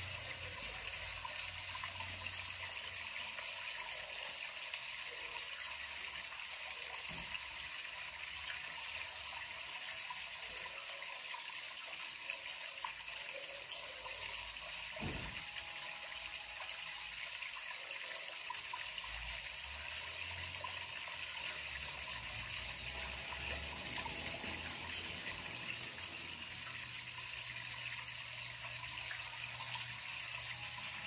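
Steady, even rush of waterfall sound, the water noise kept on to stimulate a caged coleiro (double-collared seedeater) to sing.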